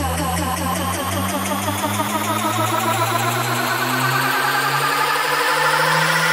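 Electronic dance music build-up: a rising synth sweep over fast repeating synth notes and a held low pad, with the deep bass dropping out about half a second in.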